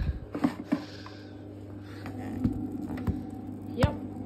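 Hotpoint WD860 washer-dryer humming steadily while in sudslock, caused by overdosed detergent powder, with a few plastic knocks and clicks from its detergent drawer being handled and pulled out.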